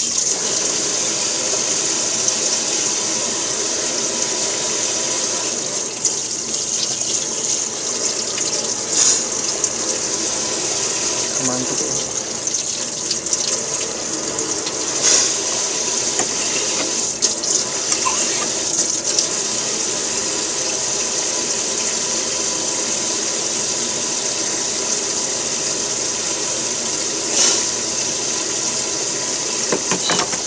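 Kitchen tap running steadily into the sink, a constant hiss of water, with a few sharp clicks scattered through it.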